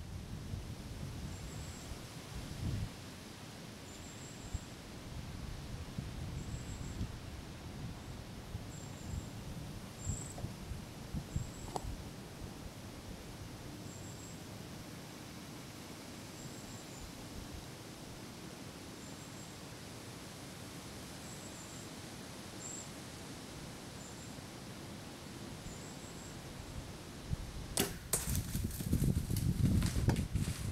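Wind through the trees with faint high chirps every second or so. Near the end comes the sharp crack of a bow shot, followed at once by a burst of rustling and crashing as the arrow-hit buck runs off through dry leaves and brush.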